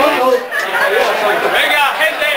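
Several voices talking and calling out over one another in a crowd, loud chatter with no music playing.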